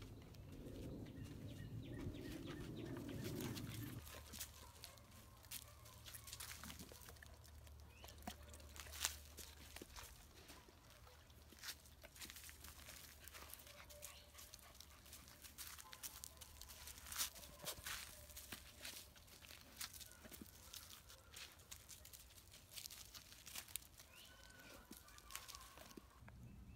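Quiet outdoor background with scattered faint clicks and ticks. A low rumbling noise in the first few seconds stops suddenly.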